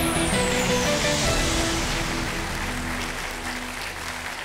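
Game-show music sting with a high falling sweep in its first second, over studio audience applause, the whole fading slowly.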